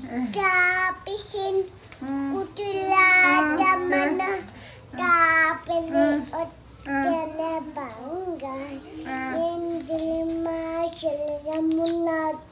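A young child singing in a high voice in short sung phrases, ending in long held notes near the end.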